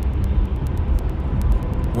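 Steady low rumble of vehicle road noise, even throughout with no distinct events.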